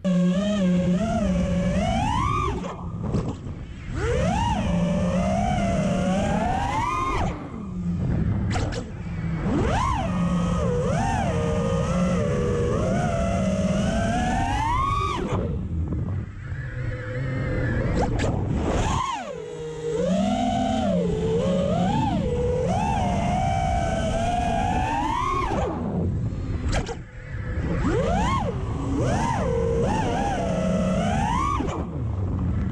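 FPV quadcopter's iFlight XING 2207 2450kV brushless motors and tri-blade props whining in flight, picked up by the onboard camera. The pitch climbs and falls constantly with the throttle, with several brief dips where the throttle is cut.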